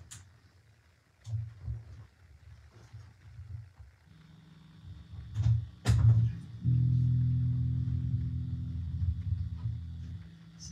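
Electric bass guitar: a few faint low thuds, then two sharp handling clicks, and then a low note plucked and left to ring, slowly fading.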